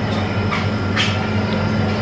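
Steady low electric hum of kitchen cooling machinery, with a short faint tick about a second in.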